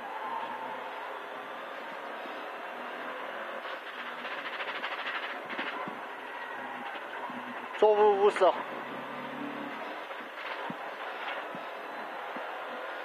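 Rally car's engine and road noise in the cabin, heard steadily through the crew intercom. About eight seconds in, the co-driver calls out a short pace note, louder than the car noise.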